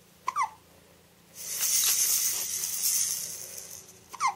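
A plastic baby rattle toy shaken for about two seconds, giving a high, hissy rattle. It is preceded by a brief high squeak that falls in pitch, near the start.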